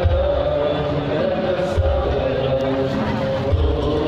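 Sholawat being chanted: male voices singing long held notes, with a low drum beat about every two seconds.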